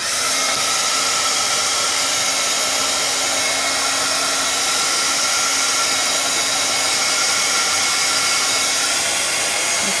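Handheld craft heat tool (embossing heat gun) switched on and blowing hot air with a steady whir to heat-set and dry fresh glue. It starts suddenly at the outset and runs at an even level throughout.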